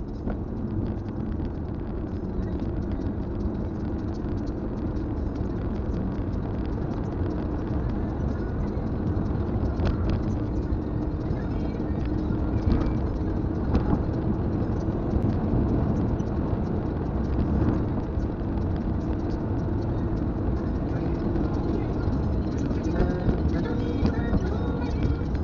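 Kia Carens cabin noise at highway speed: steady road and tyre rumble with a low engine drone.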